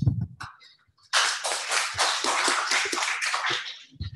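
Audience applause, starting about a second in and lasting about three seconds before it fades out.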